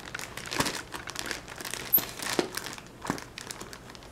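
Plastic postal mailer bag crinkling and rustling as it is handled and cut into with scissors, with a few sharp clicks scattered through.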